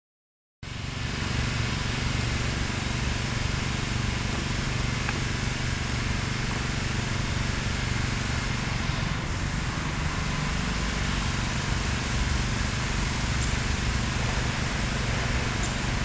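Steady outdoor background rumble of distant road traffic, starting abruptly about half a second in and holding an even level throughout.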